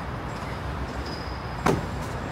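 Steady hum of city traffic and street noise heard from a high-rise balcony, with a single sharp click near the end.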